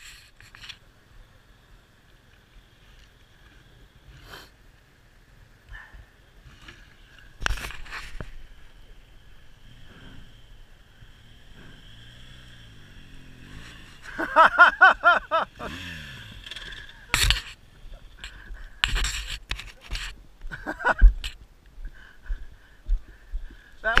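BMW GS boxer-twin adventure motorcycle engine running low and revving briefly as the heavy bike is ridden at a crawl down a steep, rutted dirt trail. Scattered knocks run through it, and a sharp thump comes near the end as the nearly stopped bike tips over.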